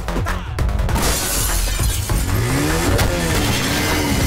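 Action-film soundtrack: background music with crash effects, a few sharp hits in the first second, then a long crashing scrape from about a second in as a motorcycle falls over and slides along the road.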